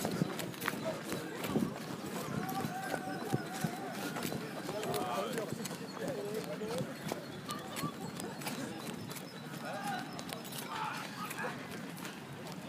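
Running footsteps and knocks and rubbing of a hand-held phone microphone as the person filming runs, with scattered distant shouting voices.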